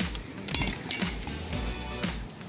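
Background music, with two short metallic clinks that ring briefly, about half a second and about one second in.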